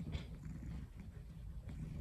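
Domestic cat purring faintly, a steady low rumble, while being stroked on the head.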